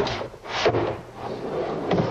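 A wooden drawer being slid into its case on newly installed drawer slides, with a knock at the start, a rushing slide as it runs, and another knock near the end.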